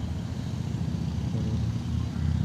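Low, steady rumble of a motor vehicle engine running close by.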